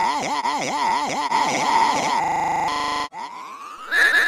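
Electronically warped, looped sound clip whose pitch wobbles up and down about four times a second, then breaks into a choppy stutter and, after a brief drop in level near the end, a rising glide.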